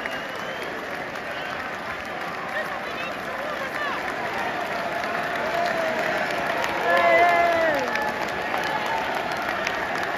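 Football stadium crowd: a steady hubbub of many voices with clapping, and a louder spell of shouting about seven seconds in.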